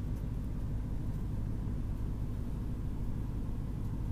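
Steady low drone of a car's engine and road noise, heard from inside the cabin while the car is driven at an even speed.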